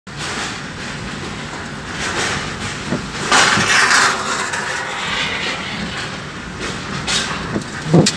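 Strong whirlwind (puting beliung) wind rushing and gusting around a car, heard from inside. A louder gust swells about three seconds in, and a few dull knocks come near the end.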